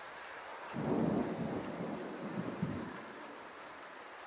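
A roll of thunder: a rumble builds about a second in and fades after about two seconds, with a couple of sharper cracks near its end, over a steady background hiss.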